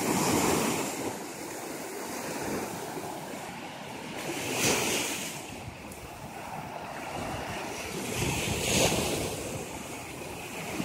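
Small surf breaking and washing up a sandy beach in a steady rush. It swells three times: at the start, about halfway, and near the end.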